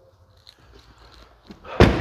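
Rear door of a Jaguar F-Pace SUV shut once with a single solid thunk near the end, after a quiet second or so.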